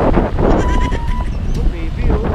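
A person's voice with a wavering pitch, over a steady low rumble.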